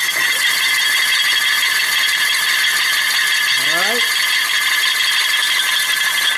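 Drill driving a flatbed truck strap winch through a shaft adapter, spinning the winch drum to wind it up. The drill motor makes a steady, high whine, with mechanical rattle from the turning winch.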